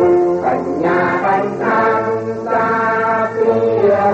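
Choral music: many voices singing long held notes that change every half second to a second.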